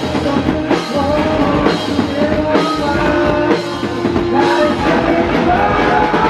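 A live rock band playing loud: several electric guitars over a drum kit.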